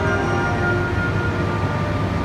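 A short station melody playing over the platform loudspeakers, a simple tune with notes held about half a second each, over the steady low hum of a stationary Shinkansen train.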